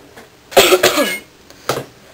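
A person coughing loudly: one longer cough about half a second in, then a shorter one near the end.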